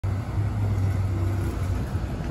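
Steady low rumble of road traffic, with a Nova Bus LFS city bus and cars approaching along the street.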